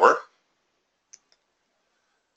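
Two short faint clicks about a second in, a fifth of a second apart, typical of a computer mouse button being clicked; a man's word trails off just before them.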